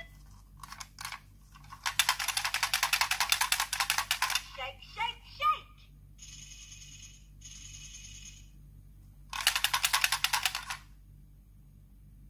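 VTech Musical Tambourine toy jingling in a dense, rapid rattle for about two and a half seconds, then again for about a second and a half near the end. In between come short electronic sounds from the toy's speaker.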